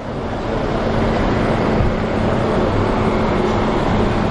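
Black Mercedes-Maybach limousine driving up, with steady engine and tyre noise that builds over the first second and then holds.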